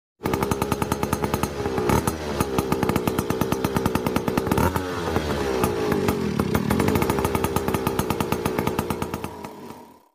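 Motor scooter engine running with a rapid, even putter, its pitch rising and falling twice as it revs. It starts suddenly and fades out near the end.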